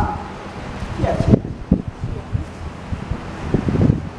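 Wind buffeting the microphone in an irregular low rumble, with a brief bit of a man's voice about a second in and a few short knocks near the end.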